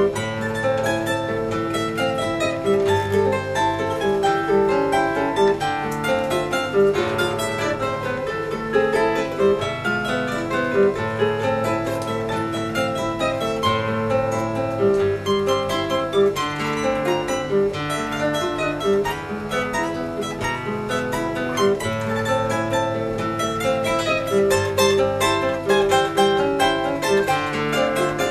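Charango and guitar duet playing a Venezuelan waltz: quick, bright plucked charango notes over a guitar bass line and chords.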